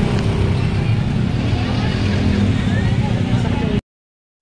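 Motorcycle and scooter engines running in a crowded street, with crowd chatter over them. The sound cuts off abruptly near the end.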